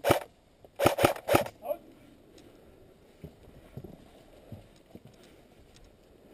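A person's voice shouting briefly: four short, loud bursts in the first second and a half. Faint footsteps and rustling follow.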